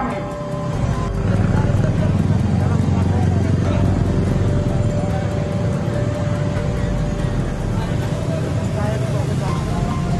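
Steady low rumble of vehicle engines and street traffic, with crowd voices over it.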